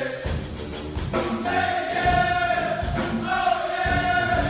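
A live brass ensemble of saxophone, sousaphone and other horns playing, with long held chords.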